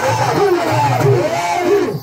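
Pandari bhajana devotional music: a two-headed hand drum beating under many men's voices singing and calling together. The drumming drops out a little past halfway, leaving the voices.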